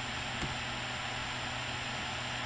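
Steady background hiss with a faint low hum, and a single faint computer-keyboard keystroke about half a second in.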